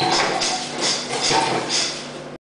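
Scuffling of a staged hand-to-hand struggle over a table: a sharp knock at the start, then a rhythmic series of short rustling, thudding bursts about two a second.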